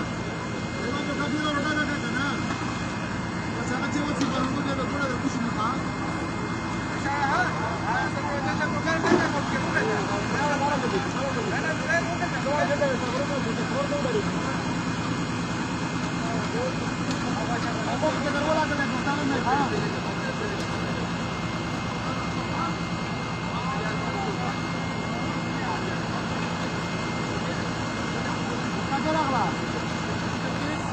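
An engine running steadily at a constant speed, with several men's voices talking over it.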